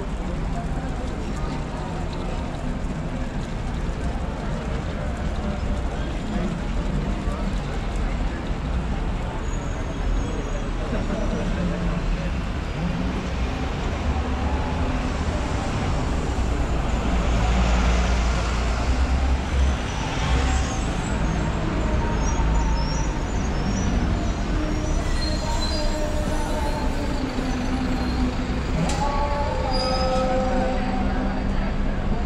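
Busy city-avenue street sound: a steady traffic rumble and passers-by talking, with a city bus passing close about halfway through, the loudest moment.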